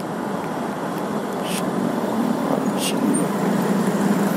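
Riding sound from a motorcycle: a steady rush of wind and road noise with the bike's engine underneath, growing louder as it moves off into traffic.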